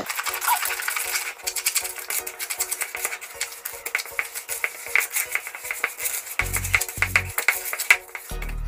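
Wire whisk beating cocoa powder, sugar and cooking oil in a bowl, a rapid run of clicks and scrapes against the bowl's side, over background music.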